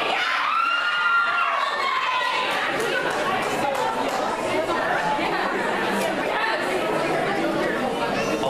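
Audience crowd chattering and calling out in a large hall, many overlapping voices with a few high shouts.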